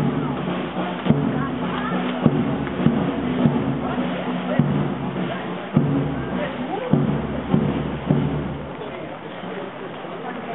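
A marching band playing a march, low held notes with a bass drum stroke about every second, fading somewhat near the end, with the chatter of the marchers and crowd.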